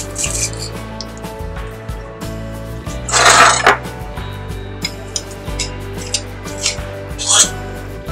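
Background music plays throughout. A metal garlic press squeezes garlic cloves over a pot: a short rasping squeeze about three seconds in and a briefer one near the end.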